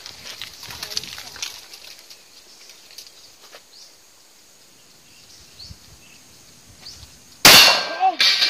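A few seconds of quiet outdoor range ambience with faint ticks, then a single loud handgun shot about seven and a half seconds in, with a short ringing tail.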